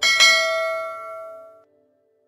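Bell chime sound effect, struck twice in quick succession, ringing out and fading before it cuts off about one and a half seconds in.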